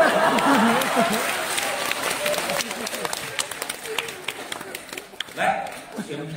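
Theatre audience clapping with crowd voices, the applause thinning out over a few seconds; a man's voice comes back in near the end.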